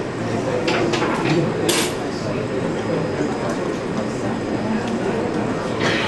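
Indistinct talk from several people in the background, steady throughout, with a few sharp metal clinks in the first two seconds as a spoon and a glass jar of ground garlic are handled.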